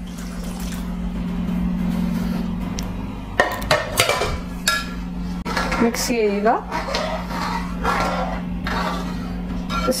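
A steel ladle stirring thick lentil dal in a metal kadai, scraping through the dal and knocking sharply against the pan several times around the middle, over a steady low hum.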